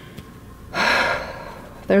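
A woman's audible intake of breath through the mouth, about a second in and lasting about half a second, as she pauses before going on speaking.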